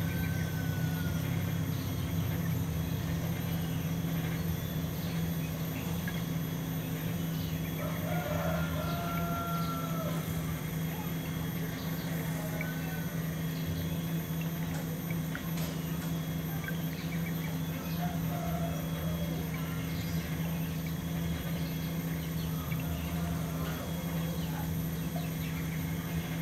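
Outdoor background sound: a steady low hum with scattered faint bird calls, the clearest a short run of calls about eight to ten seconds in.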